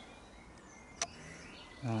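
Quiet outdoor garden background with a single sharp click about a second in.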